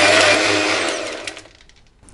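Electric mixer-grinder blending soaked dry fruits with milk. The motor runs loudly, then is switched off about a second in and winds down to quiet.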